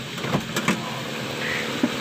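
A Honda City i-DSI four-cylinder twin-spark engine idling steadily and slightly rough (pincang): a misfire on one of its eight coils or spark plugs. A few sharp clicks come in the first second and one more near the end.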